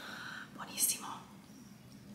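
A woman's soft, whispered voice, faint and breathy, with a short hiss about a second in.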